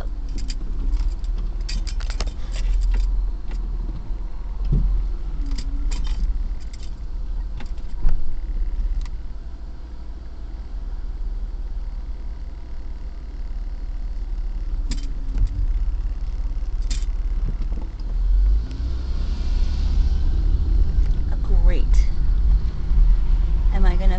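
Steady low rumble of a car's engine and tyres heard from inside the cabin while driving slowly, with scattered short clicks and rattles.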